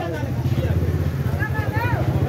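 A motorcycle engine idling close by, a steady low rumble under the chatter of several men's voices.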